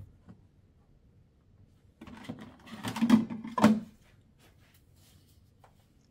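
Black plastic hard case being opened: a run of plastic clacks and handling noise about two seconds in as the latches are released and the lid is swung up, with two louder clacks a little over half a second apart.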